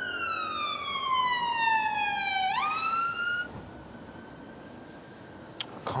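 Emergency vehicle siren wailing: a long, slow fall in pitch, then a quick rise, cutting off about three and a half seconds in.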